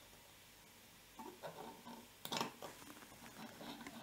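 Faint clicks and rustling of a jumper wire being handled and pushed into an Arduino Uno's pin header, with one sharper click a little past the middle.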